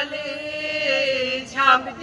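A voice chanting slowly in long held notes, with a short louder phrase near the end.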